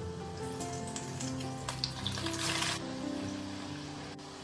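Rice-batter vadas deep-frying in hot oil in a kadai, sizzling with scattered crackles, under soft instrumental background music. The sizzling drops back a little about three seconds in.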